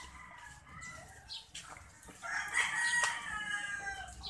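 A rooster crowing: one long call begins a little past halfway and trails off near the end, with fainter fowl calls in the first second.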